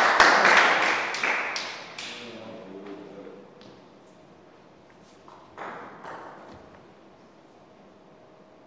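Table tennis ball clicking and bouncing between points, with a loud noisy burst of clicks in the first two seconds that fades out. A second short burst comes about five and a half seconds in.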